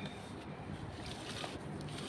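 Handling noise of a phone being moved against a fleece blanket: soft rustling over a steady low rumble, the rustle strongest a little past halfway.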